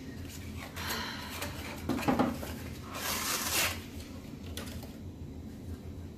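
Small handling noises of painting supplies on a work table: a few faint clicks, a short knock about two seconds in and a brief hiss around three seconds in, over a low steady room hum.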